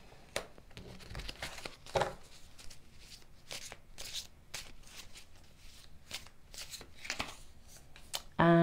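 A deck of tarot cards being shuffled and handled: a run of soft, irregular flicks and rustles of card stock.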